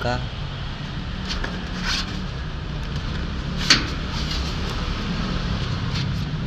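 Cardboard box and plastic packaging of an airbrush kit being handled as the box is opened and its clear plastic tray taken out: a few short clicks and rustles, the sharpest about three and a half seconds in, over a steady low background hum.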